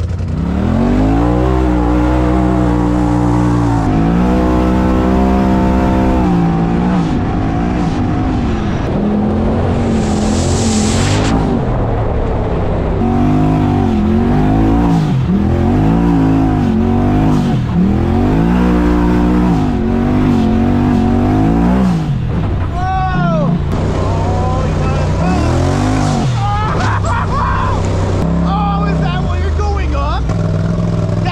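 Polaris RZR turbo side-by-side's engine, heard from inside the cab, revving up and falling back again and again as it is driven along the trail, with a brief hiss about ten seconds in.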